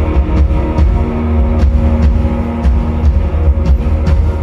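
Live Christian rock band playing: electric and acoustic guitars and keyboard over a strong low bass, with regular drum hits.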